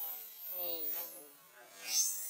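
A monkey giving a short, pitched call about half a second in, over a steady high-pitched buzz.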